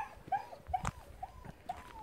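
An animal giving a series of short high-pitched whines, about five in two seconds, the last one drawn out, with a single sharp click near the middle.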